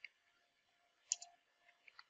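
A few faint computer keyboard keystrokes, the loudest a quick pair about a second in, as a terminal command is typed.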